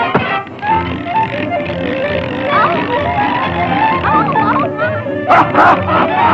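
Early-1930s cartoon orchestra score playing busily, with short sliding, yelp-like sound effects in the middle and a brief noisy clatter near the end.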